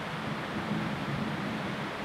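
Steady, even hiss of background room noise with no voice.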